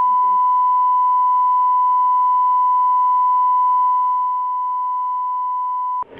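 Steady electronic test tone, a single unbroken beep at one pitch, put on the broadcast feed at the close of the recorded session. It gets a little quieter about four seconds in and cuts off suddenly at the end.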